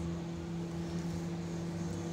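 Panasonic convection microwave oven running with a steady hum while it cooks.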